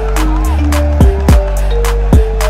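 Background music with a steady beat: deep held bass notes, kick drum hits and ticking hi-hats under a short repeating melody.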